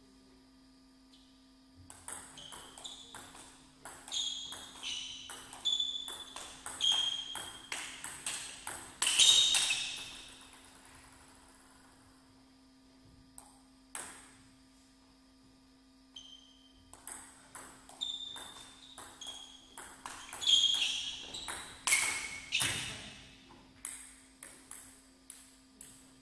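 Two table tennis rallies: the ball clicks sharply back and forth off the paddles and table in quick succession, with a quiet gap of several seconds between the rallies. A steady low hum runs underneath.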